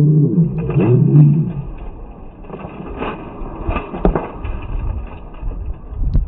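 Slowed-down audio of a sword sparring bout. A deep, stretched-out voice sound with a wavering pitch fills the first second and a half. A few dull knocks of the sparring weapons follow about three and four seconds in, over a low rumble.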